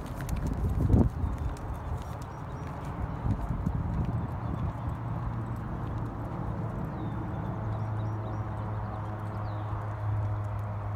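Horse's hoofbeats as it canters over a sand arena, with a loud thud about a second in. A steady low hum joins in about halfway through.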